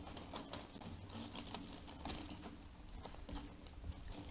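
Faint, irregular clicking and crackling over a low hum, picked up by a trail camera's microphone as a river otter handles and feeds on a duck on a dock.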